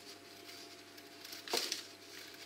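Small kitchen knife peeling a raw potato: faint scraping strokes of the blade through the skin, the clearest about one and a half seconds in.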